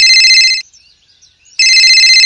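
Electronic phone ringtone ringing: a high, trilling ring in bursts of about a second, breaking off about half a second in and starting again about a second later.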